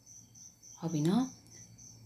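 Insect chirping, a high, evenly pulsed chirp that keeps on steadily, with a short spoken syllable about a second in.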